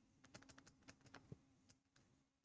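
Near silence with a scatter of faint, irregular ticks: a stylus tapping and scratching on a tablet screen while an equation is handwritten.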